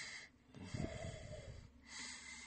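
Faint breath-like noise and hiss heard over a telephone line, with no words.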